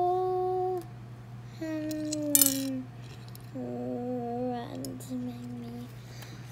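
A person humming a slow run of held notes, about a second each, stepping gradually lower, with a brief clatter about two and a half seconds in.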